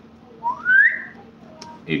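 A single short whistle, one note sliding upward for about half a second.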